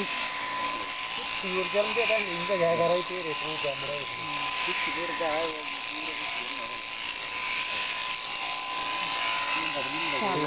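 Electric sheep-shearing machine, its handpiece on a flexible drive shaft, buzzing with a steady whine as it clips a sheep's fleece.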